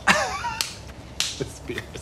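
A brief vocal sound, then two sharp snaps about half a second apart and a couple of fainter knocks, from a film soundtrack.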